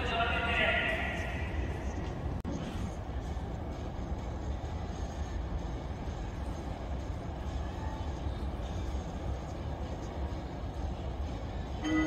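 Steady outdoor background noise with a strong low rumble. A voice trails off in the first second or two.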